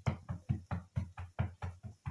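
A quick, even run of short knocks, about five a second, each with a dull low thud.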